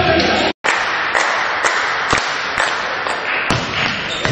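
Sound of an indoor volleyball match: steady crowd noise in a large hall, with several sharp taps and thuds on and around the court. The sound cuts out completely for a moment about half a second in, where the footage is edited.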